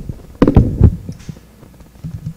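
Handling noise on a handheld microphone: a few dull, low thumps in the first second, then low background hum.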